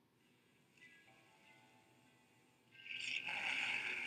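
Opening of a Dodge car commercial's soundtrack played back on a computer: faint held music notes, then a louder, brighter sound swells in about three seconds in.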